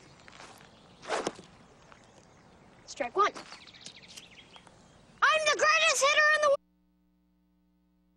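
A child's voice calling out loudly in a long, wavering tone over faint outdoor background, with two brief fainter sounds earlier on; the sound cuts off suddenly about six and a half seconds in.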